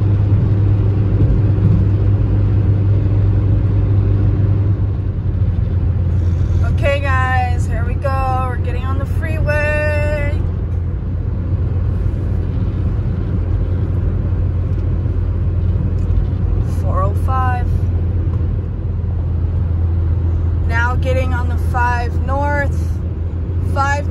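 Steady low drone of road and engine noise inside a car cruising at freeway speed.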